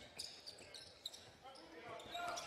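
Faint court sound from a basketball game: a ball being dribbled on the hardwood amid a low arena crowd murmur.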